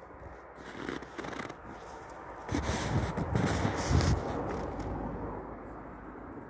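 Crunching and rustling in packed snow, a run of irregular crunches that is loudest between about two and a half and four seconds in, then dies away.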